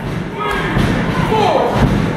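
Thuds of a wrestler's body hitting the wrestling ring's mat, one about half a second in and a heavier one near the end as the opponent is taken down. Crowd voices and shouts run throughout.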